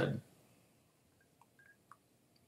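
A man drinking from a glass: after a word ends, a few faint short sounds of sipping and swallowing in an otherwise near-silent small room.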